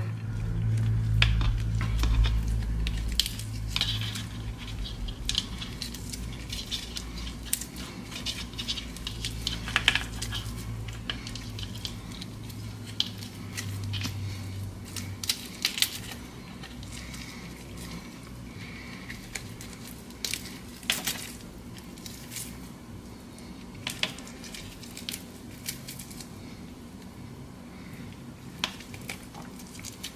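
Cooked crab leg being pulled apart by hand to get the meat out: scattered small clicks and cracks of shell, with soft squishes of meat. A low hum runs underneath and stops about halfway.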